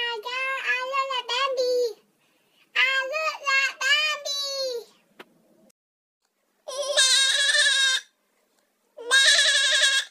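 A voice raised high by a Snapchat voice-changing filter talks for a few seconds. After a pause, two long goat-like bleats with a wavering pitch, each over a second long, come from the goat filter's voice effect.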